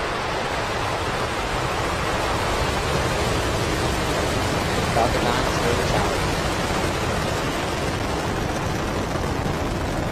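Falcon 9 rocket lifting off, its nine Merlin engines making a loud, steady rushing rumble as it climbs.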